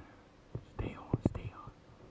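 A person whispering a few low words, with a couple of sharp clicks among them.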